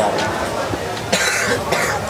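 A man's short cough about a second in, over faint voices and background noise.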